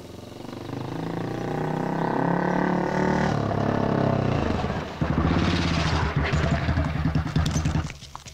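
Motorcycle engine approaching and growing louder, its revs falling about three seconds in. From about five seconds in it runs at low revs with an even putter.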